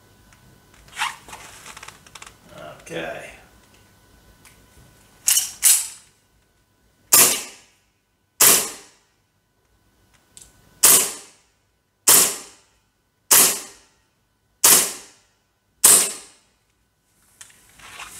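WE Tech Beretta M92 gas blowback gel blaster pistol firing nine shots into a chronograph. Two come in quick succession about five seconds in, then single shots follow roughly every second and a bit, each a sharp report with a short ring.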